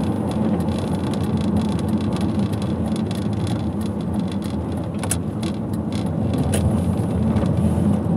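A car driving steadily on a wet road, its engine and tyre noise heard together with wind on the outside of the car, with two short clicks about five and six and a half seconds in.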